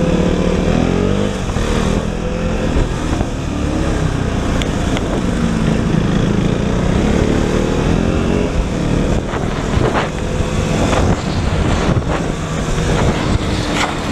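KTM motorcycle engine ridden through traffic, its note rising and falling several times as the rider opens and closes the throttle, over a steady rumble of wind on the microphone.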